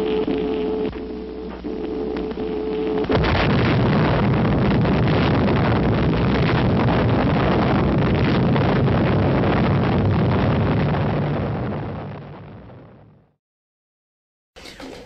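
Atomic bomb test explosion on an old newsreel soundtrack. A steady hum gives way, about three seconds in, to a sudden loud blast that carries on as a long rumble. The rumble fades away near the end.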